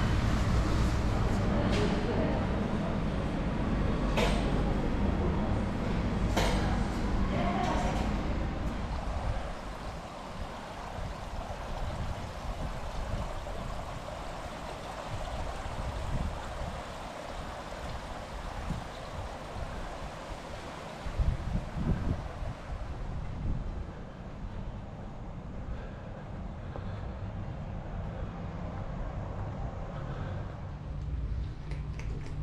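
Buffet restaurant hubbub: a low murmur of voices with a few sharp clinks of crockery and serving utensils, lasting about nine seconds. Then a much quieter, steady outdoor hiss with irregular low rumbles, briefly louder a little past the twenty-second mark.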